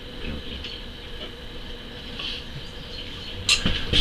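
Steady low background rumble and faint hum of room noise, with a single sharp click or knock about three and a half seconds in.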